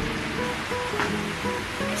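Background music: a slow melody of short, steady notes over an even hiss.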